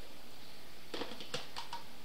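Quiet room tone with a few faint light clicks and taps about a second in, from handling a blender jar and its plastic lid.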